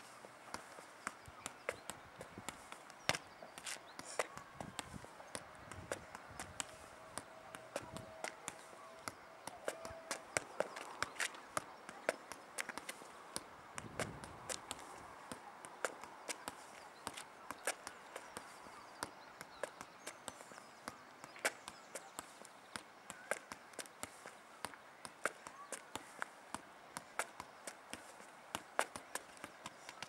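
A football being juggled and struck with the feet during 'around the world' freestyle tricks. Irregular light taps of the ball on the foot, a few a second, mixed with shoe steps and scuffs on tarmac.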